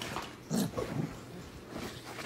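A dog making a couple of short, low vocal sounds close to the microphone, about half a second in and again about a second in.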